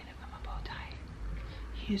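A woman's soft, whispery voice over a steady low hum, with ordinary speech starting at the very end.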